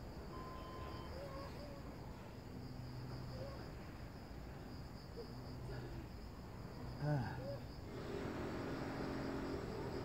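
Faint park ambience dominated by a steady, high-pitched insect drone. About seven seconds in, a brief louder sound slides down in pitch, and a broad rush of noise rises over the last two seconds.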